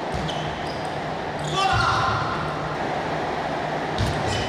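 Table tennis ball being hit by rackets and bouncing on the table, sharp clicks that ring in a large hall. About a second and a half in, a player gives a loud shout lasting about half a second, over a steady low hum in the hall.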